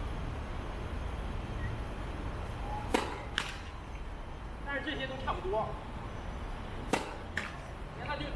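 Tennis serves: a racket strikes a ball sharply twice, about four seconds apart, and each hit is followed about half a second later by a second, fainter knock. A voice is heard faintly between the two hits.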